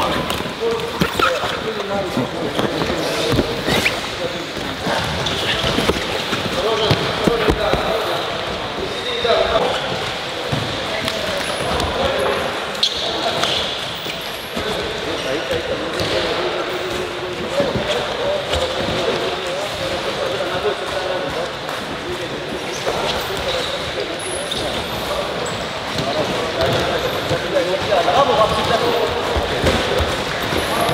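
Wrestlers drilling on gym mats: a continual run of thuds and slaps of bodies and feet hitting the mat, under indistinct voices.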